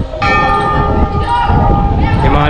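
Large brass temple bell struck once, just after the start: a bright clang that rings on as several steady overtones, slowly fading.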